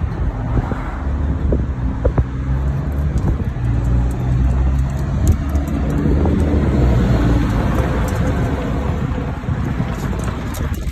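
Diesel engine idling steadily, a low even hum with a steady pitch.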